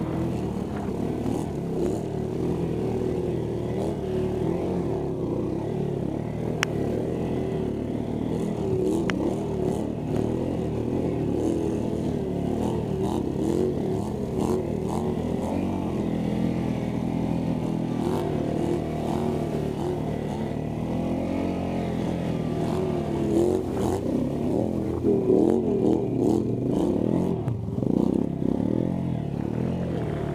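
Snorkeled ATV engine pulling through deep mud and water, the revs rising and falling with the throttle, with louder surges of revving near the end.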